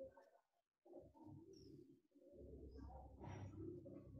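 Faint, low, drawn-out vocal sounds from a person, breaking off into brief dead silences about half a second in and again near two seconds.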